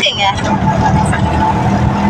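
Auto-rickshaw engine running steadily beneath the rumble of the ride, heard from inside the open passenger cabin.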